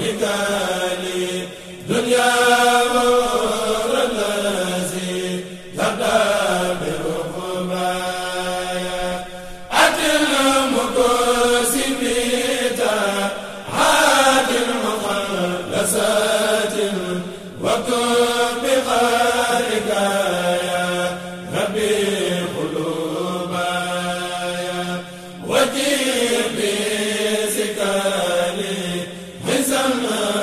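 Islamic devotional chanting (dhikr): voices repeating a short phrase that falls in pitch, starting again about every four seconds over a steady low hum.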